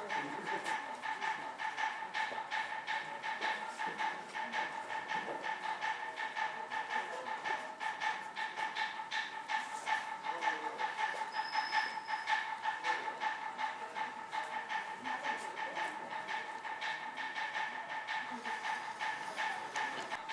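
Many voices chanting together on one held pitch, over fast, steady, rhythmic clacking that never stops.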